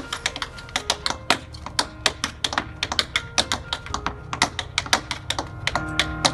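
Tap shoes striking a wooden tap board in a fast run of tap-dance steps, several sharp taps a second.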